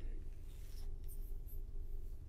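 Quiet room tone: a steady low hum with faint hiss, and a faint soft rustle of noise between about half a second and a second in.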